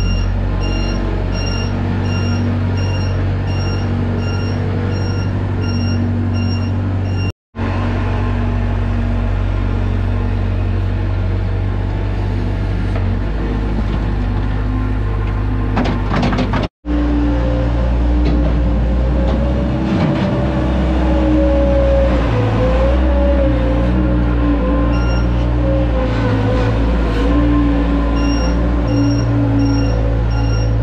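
Gehl skid steer loader's engine running steadily under work, its pitch shifting as the loader digs and lifts manure. A beeping alarm sounds about twice a second near the start and again near the end. The sound cuts off abruptly twice.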